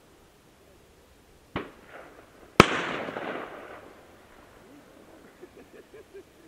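Two distant shotgun shots about a second apart, the second louder and trailing a long echo across the water: duck hunters firing at ducks sitting on the water.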